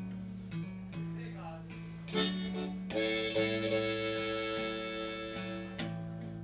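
Electric guitar picking a repeating bass line, joined about two seconds in by a harmonica that holds a long chord through most of the second half.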